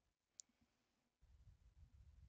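Near silence, with one faint, sharp click about half a second in and faint low rumbling in the second half.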